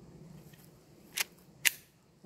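Taurus TX22 .22 LR pistol being loaded and chambered by hand: two sharp metallic clicks about half a second apart, the second louder, leaving the pistol ready to fire.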